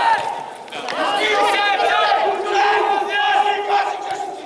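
Several men shouting and calling out to each other during a football match, loud overlapping calls with a brief lull about half a second in.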